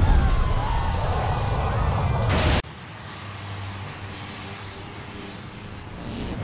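Loud rumbling crash of a skyscraper collapsing after an explosion, with debris falling, cutting off abruptly about two and a half seconds in; a faint low steady hum follows.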